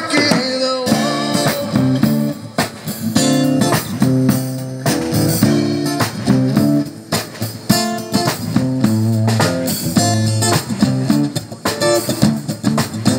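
Live rock music from an acoustic guitar and a drum kit, the guitar strumming chords over a steady drum beat.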